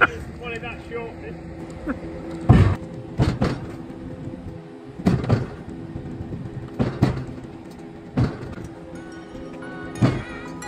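A steady engine drone, the winch or low-loader engine under load, with heavy metallic clanks every second or two as the Centurion tank's tracks and hull are dragged up onto the trailer. Music comes in near the end.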